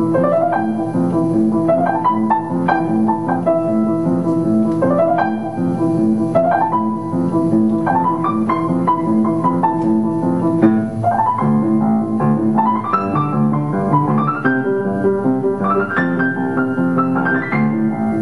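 Solo piano playing: a steady pattern of low repeated chords under rising runs of higher notes that sweep upward again and again, every second or two.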